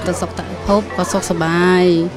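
A woman speaking, with music playing underneath; near the end one word is drawn out into a long held tone.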